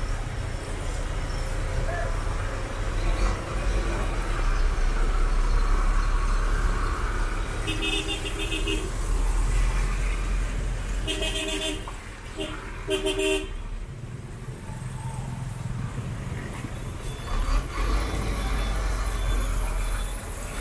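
Street traffic with engines running, and vehicle horns honking: one toot about eight seconds in, then several short toots in quick succession a few seconds later.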